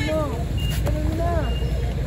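Onlookers' voices talking and calling out over a steady low rumble of street traffic.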